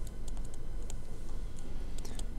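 Stylus pen tip tapping and scratching on a tablet screen during handwriting: a scatter of light, irregular clicks over a low steady hum.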